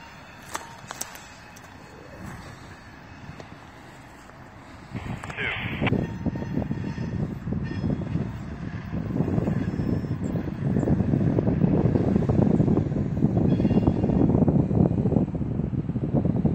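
Wind buffeting the microphone, rising to a loud gusty rush about five seconds in and staying there. Before that there is a quieter outdoor background with a couple of light clicks, and a brief high-pitched sound just as the wind picks up.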